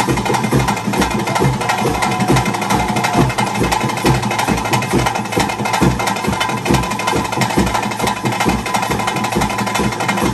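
Traditional ritual drumming, fast, loud and dense, with strokes about four to five a second and a steady held higher tone over it.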